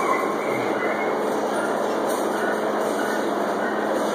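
Steady mechanical running noise with a low, even hum underneath.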